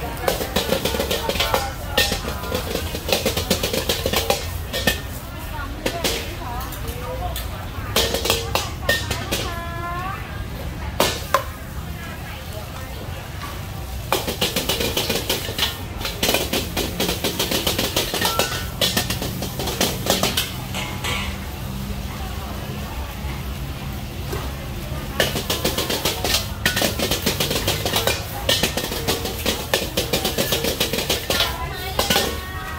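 A metal ladle scraping and clanking rapidly against a carbon-steel wok while fried rice is stir-fried, in several bursts of a few seconds each. Under it runs the steady rush of a high gas burner.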